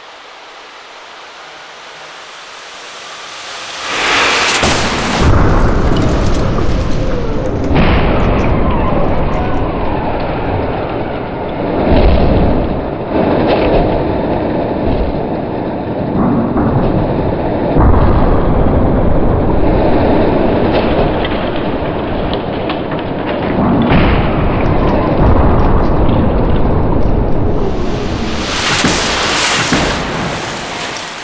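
Crash-test impact soundtrack for a rear barrier crash: a hiss swells for about four seconds, then a loud, dense rumble with repeated heavy booms, and a bright rushing crunch near the end.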